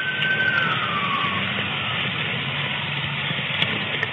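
An emergency vehicle's siren holds one steady tone, then slides down in pitch and dies away within the first second and a half. Under it runs a steady low vehicle rumble.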